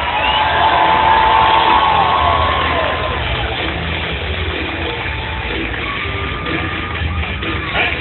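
Stadium public-address music with a pulsing bass beat, over a cheering crowd.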